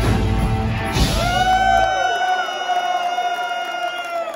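Electric guitar solo on a Gibson Les Paul through a loud amp: about halfway through, the bass and drums drop away and a single long sustained note rings on, with bends beneath it. Crowd cheering faintly under the guitar.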